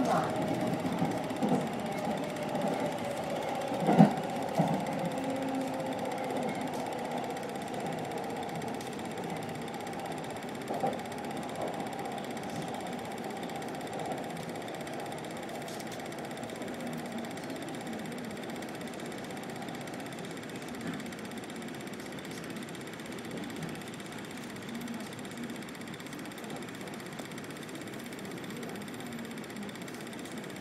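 Electric commuter train running and slowing, its motor whine falling in pitch over the first several seconds while the rumble slowly fades. A sharp knock comes about four seconds in.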